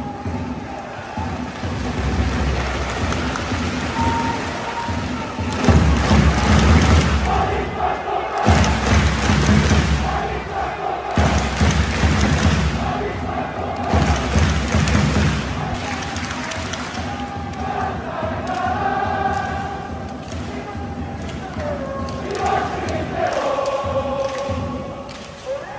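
Football supporters singing a chant in unison, with drums beating heavily beneath it.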